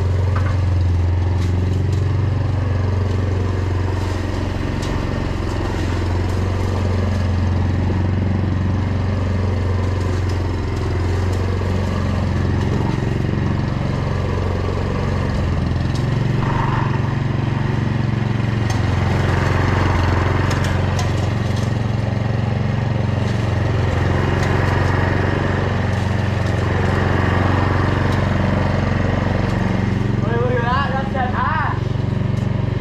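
Walk-behind petrol rotary lawn mower running steadily while it cuts grass, its engine hum holding an even level as the mower is pushed back and forth close by.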